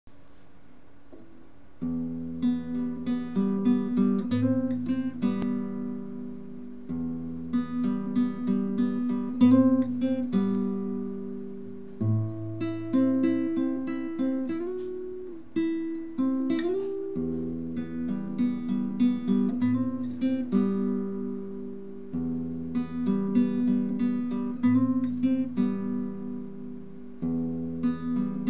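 Solo classical guitar fingerpicked: an arpeggio over open-string bass notes, played in phrases that begin again about every five seconds, starting about two seconds in. A short slide between frets comes near the middle.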